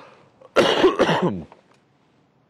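A man clearing his throat with two short coughs in quick succession, about half a second in.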